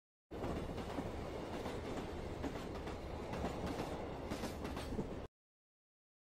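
A steady rumbling noise with many small scattered clicks that starts just after the beginning and cuts off abruptly about five seconds in.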